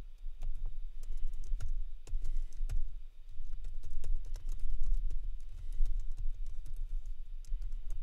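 Typing on a computer keyboard: a fast, uneven run of key clicks in short bursts as a sentence is typed out.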